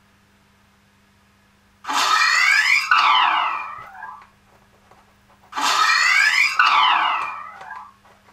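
Darth Vader respirator breathing sound effect played by the ChestBox sound board through a small speaker, in its normal (not broken) mode. Two full breath cycles, each an intake followed by an exhale, the first beginning about two seconds in.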